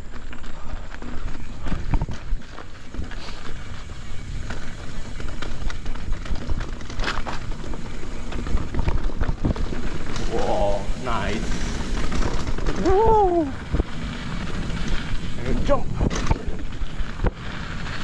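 Mountain bike on Michelin Wild Enduro tyres rolling fast over a dirt trail: a steady rumble and rattle of tyres and bike, with wind rushing over the action-camera microphone. A few short sounds with rising and falling pitch come in around the middle and again near the end.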